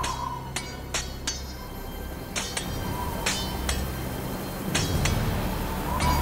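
A cartoon soundtrack: about ten sharp, glassy clinks with a short ring, scattered unevenly over low, sustained background score.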